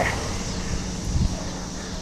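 Steady rushing noise of wind on the microphone and tyres rolling on pavement as a bicycle rides along a street.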